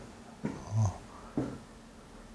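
A man's breathing in a pause between sentences: soft short breaths, with a brief low voiced sound near the middle.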